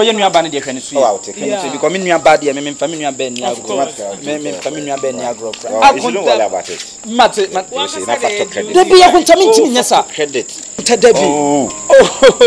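People talking back and forth, over a steady high-pitched insect-like chirring that runs on unbroken behind the voices.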